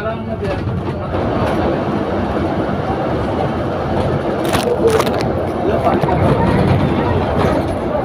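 Double-decker bus in motion heard from the upper deck: steady engine and road noise with interior rattles, and a couple of sharp clicks about four and a half to five seconds in.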